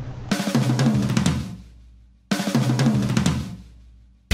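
Two drum-kit breaks in a rock song, the second starting about halfway through. Each is a sudden burst of drum hits with a cymbal crash that rings and dies away over a second or so.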